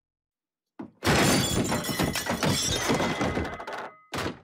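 Loud cartoon crash sound effect of a heavy body landing on a kitchen table. Things break and clatter for about three seconds, starting about a second in.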